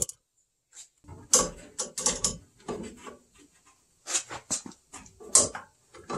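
Irregular clusters of metallic clicks and scrapes as new brake pads and the wire anti-rattle spring are squeezed and pushed into a Porsche 930 brake caliper.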